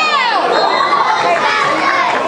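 Crowd of spectators cheering and screaming, many high voices overlapping, as a ball carrier runs in for a touchdown.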